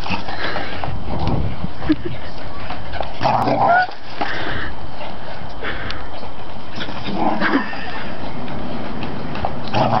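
A dog wearing a cone collar makes short bursts of excited vocal sounds while running about, strongest about three seconds in and again past the seven-second mark. A steady rushing noise runs underneath.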